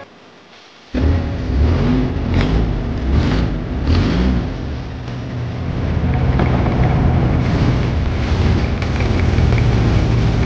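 A longtail boat's engine running loud from on board, with water and wind noise over it, starting suddenly about a second in.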